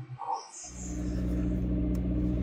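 Faint music cuts off about half a second in. It gives way to the steady low hum of a car engine idling, heard from inside the cabin.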